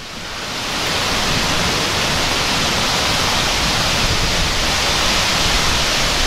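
Torrential wind-driven rain and strong thunderstorm downburst wind in the trees: a loud, steady rush that swells over the first second, with wind buffeting the microphone.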